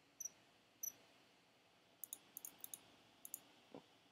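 Faint computer mouse and keyboard clicks: two single clicks in the first second, then a quick run of about a dozen keystrokes about two seconds in, and a soft knock near the end.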